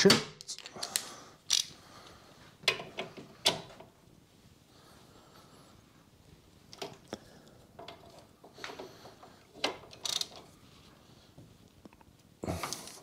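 Socket ratchet clicking as the 15 mm brake caliper carrier bolts are tightened: a run of clicks, a pause of a few seconds, then another run.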